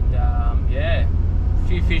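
Steady low rumble of a car's engine and road noise inside the moving cabin, under a man's talking.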